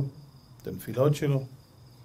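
A man's voice speaks one short word through a microphone during a pause in the talk. Behind it a faint, steady high-pitched tone carries on through the quiet.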